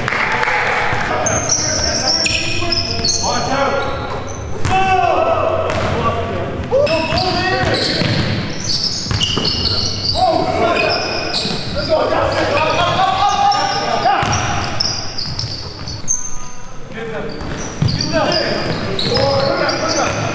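A live indoor basketball game: the ball bouncing on the hardwood court, sneakers squeaking, and players calling out to each other, all echoing in a large gymnasium.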